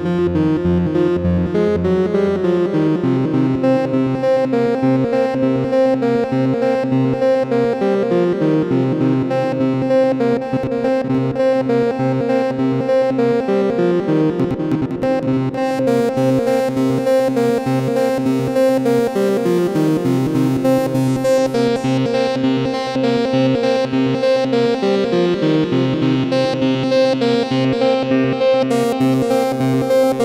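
Arturia MicroBrute monophonic analog synthesizer playing a steadily pulsing line of notes that steps up and down in a repeating pattern. The tone turns brighter about halfway through.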